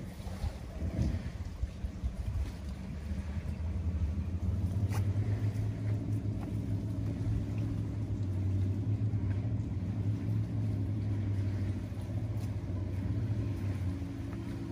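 A motorboat engine running steadily out on the water, a low hum that grows louder about four seconds in and stays.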